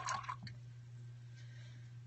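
A paintbrush rinsed in a tray of water, with a brief swish and splash in the first half second, over a steady low hum.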